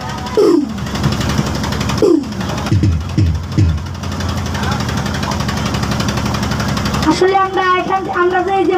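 A steady low hum through a PA system, with several falling low swoops in pitch in the first few seconds. About seven seconds in, a boy starts singing into the microphone, his wavering voice carried over the loudspeakers.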